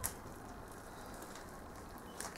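Faint steady hiss with a light click at the very start.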